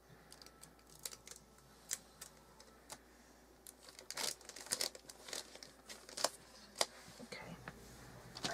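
Gift-wrapping paper crinkling in quiet, irregular crackles as hands fold and tape it around a box, the crackles growing busier about halfway through.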